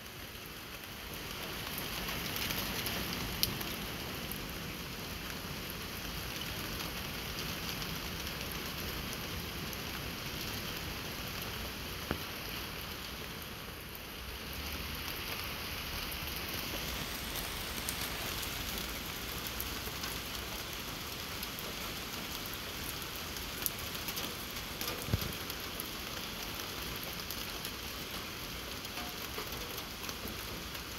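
Steady hiss-like background noise with a few faint clicks.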